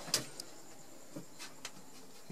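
Quiet room with a short click near the start, followed by a few fainter ticks and taps from the camera being handled and swung around.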